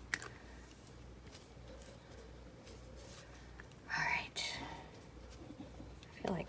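Quiet, faint scratching of a small paintbrush spreading glue over tissue paper on a journal page, with a short whispered murmur about four seconds in.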